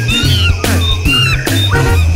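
Upbeat background music with a steady stepping bass line, with short gliding tones that rise and fall laid over it.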